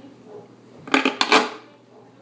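A plastic RC crawler body being pulled off the truck's chassis and body posts. A quick clatter of several hard plastic clacks comes about a second in and lasts about half a second.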